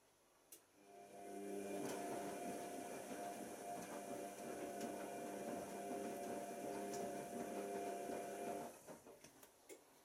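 Tricity Bendix AW1053 washing machine running. A steady whine starts about a second in, grows louder, holds for about eight seconds and then cuts off, followed by a few soft knocks.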